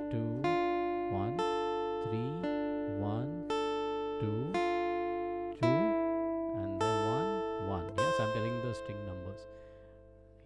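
Acoustic guitar picking a D minor triad as a slow arpeggio, one note at a time about once a second, each note left to ring into the next; the last notes die away near the end.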